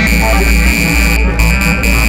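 Loud live electronic music: a heavy, steady sub-bass under a held high-pitched synthesizer tone and busy mid-range texture.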